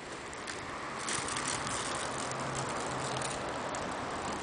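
Plastic crisp packet crinkling and crackling as it is handled, getting louder about a second in.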